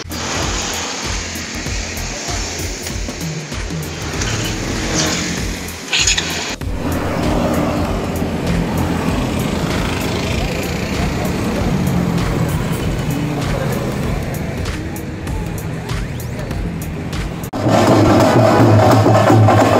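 City street traffic heard from a moving two-wheeler, with wind buffeting the microphone. Just before the end, loud drumming from a street procession starts up.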